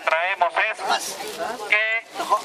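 People's voices speaking in the gathered crowd, with a high, wavering voice heard near the start and again near the end.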